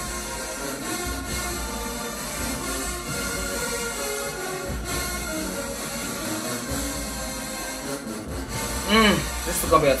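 Marching band playing in the stadium stands, heard at a distance over crowd chatter. A man's voice comes in near the end.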